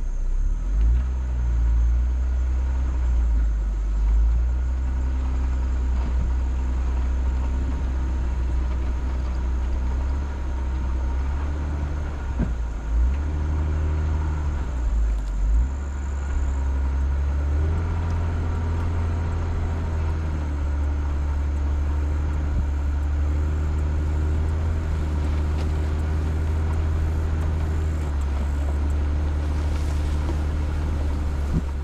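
Vehicle engine running at low speed with a heavy low rumble, its pitch shifting up and down a few times with the throttle, most around the middle.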